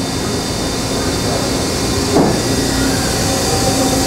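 Steady mechanical hum and rumble of machinery running in an industrial plant, with a faint steady tone in it and one brief knock about two seconds in.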